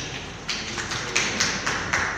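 A few people clapping their hands, sparse separate claps about four a second, beginning about half a second in.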